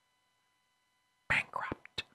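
A pause in a man's speech: near silence for over a second, then a short breathy, whispered vocal sound with a couple of mouth clicks near the end.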